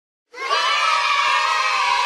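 A crowd of children cheering and shouting together. It starts abruptly a moment in and holds steady.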